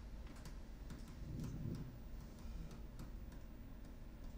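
Classroom room tone under a low steady hum, with scattered faint clicks and ticks and a soft low rustle about a third of the way in.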